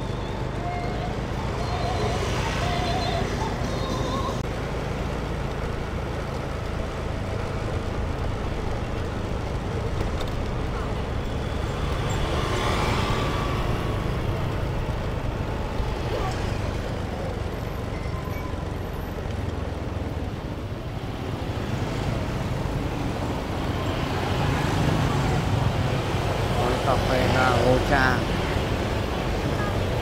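Street traffic with motor scooters passing close by, their engines swelling and fading several times over a steady low rumble.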